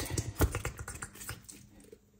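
Plastic squeeze bottle of Kraft mayonnaise squeezed upside down, giving a quick run of small clicks and squelches as the mayo spurts out. One sharper click comes about half a second in, and the sound thins out near the end.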